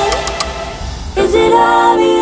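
Background music: a pop song, with a sung vocal line coming in about a second in.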